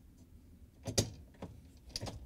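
Plastic end cap being slid onto the end of a dishwasher upper-rack rail, with a sharp click about a second in as it locks into place and a few lighter plastic clicks around it.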